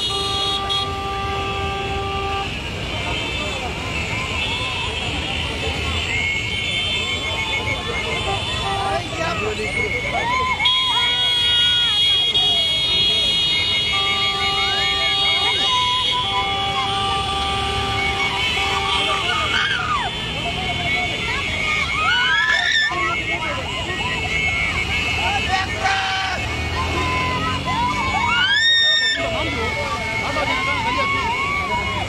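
A procession of motorcycles running, with horns held in long blasts near the start and again midway, over a crowd of voices shouting and cheering.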